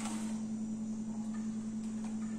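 A steady low hum at one constant pitch, with no other clear sound.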